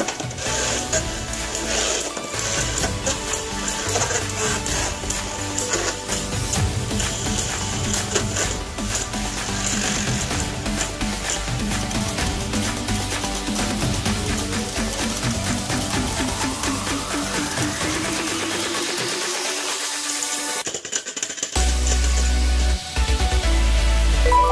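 Background music over Beyblade Burst spinning tops clattering and clashing against each other and the plastic stadium wall. A long rising sweep builds toward a short break near the end, followed by a heavy bass beat.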